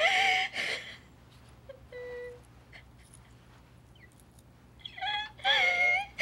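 A woman crying in distress: a wailing cry at the start, a short whimper about two seconds in, and another loud wail near the end.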